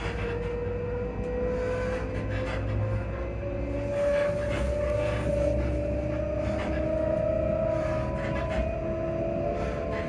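Class 334 Juniper electric multiple unit heard from inside the carriage as it accelerates: its traction motor whine climbs slowly and steadily in pitch. Under the whine are the low rumble of the running gear and scattered clicks from the wheels on the track.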